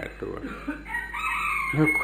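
A rooster crowing in the background: one long call of about a second, starting about halfway through, heard under a man's speech.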